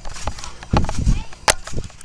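Handling noise from a handheld camera being swung about: irregular knocks and rubbing, with a low thudding rumble near the middle and a sharp click about one and a half seconds in.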